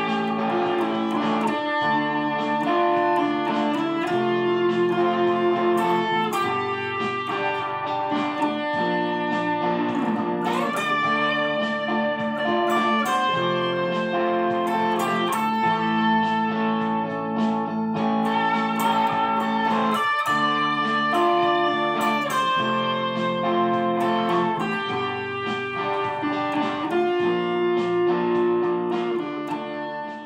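Electric guitar playing an improvised lead line in D minor over sustained chord accompaniment, fading out at the end.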